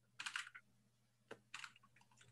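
Faint computer keyboard typing: a quick cluster of keystrokes about a fifth of a second in, then a few more around a second and a half in.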